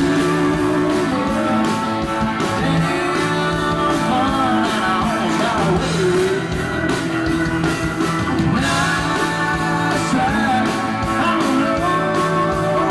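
A live country band playing electric guitars and electric bass over a steady beat, with a melody line bending in pitch above the chords.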